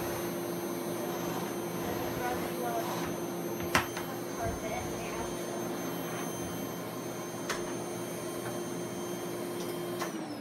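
Dirt Devil Easy Elite SD40010 canister vacuum running steadily, its motor giving a constant hum with a whine over the rush of air. A short sharp knock comes about four seconds in and another near eight seconds.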